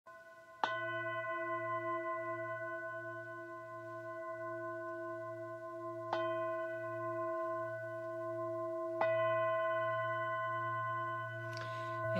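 A singing bowl struck three times, first about half a second in, then again about five and a half and three seconds later. Each strike rings on in a long sustained tone that throbs slowly.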